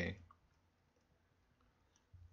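A few faint clicks of a stylus tapping on a tablet screen while handwriting, in an otherwise near-silent room.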